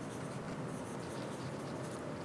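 Marker pen writing on a whiteboard, faint scratchy strokes.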